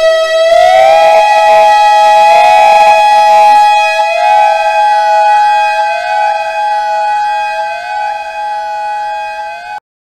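No-input mixer feedback: a loud steady tone with overtones that, about half a second in, slides up in pitch and is joined by layered tones with repeating upward glides, about one a second. It cuts off suddenly near the end.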